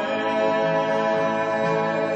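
Church singers holding a long, steady chord of several notes, with a low note that moves twice beneath it.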